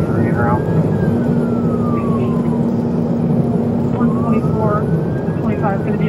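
Police siren on a wail setting, sweeping slowly up and down in pitch, heard from inside a patrol car running at high speed in a pursuit, over heavy road and engine noise.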